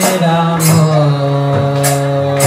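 Group devotional chanting with sustained melodic accompaniment, the notes held and stepping from one pitch to the next, and metallic percussion strikes about a second apart.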